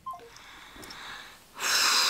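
A woman breathing out hard, starting about one and a half seconds in, after a second of faint rustling.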